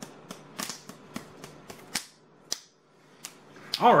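A series of short, sharp plastic clicks, about three a second at first, then a few louder, irregular ones, as a small plastic toy is handled; a man starts speaking near the end.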